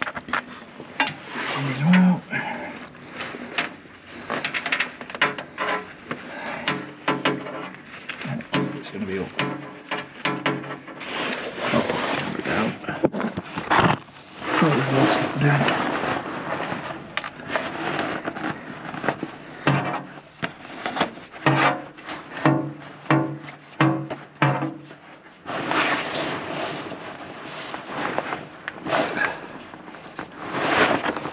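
Clicks, knocks and scraping of hands and metal fittings in an engine bay as a compression-tester hose is screwed into a spark-plug hole by feel, with voices in the background.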